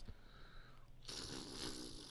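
Quiet pause with faint room noise; a soft, even hiss comes in about a second in.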